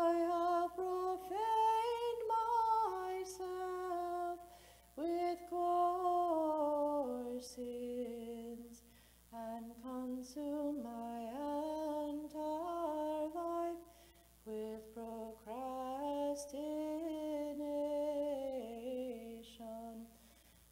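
A single voice chanting unaccompanied: Orthodox liturgical chant, sung in phrases of a few seconds with brief pauses between them and with the melody moving in small steps.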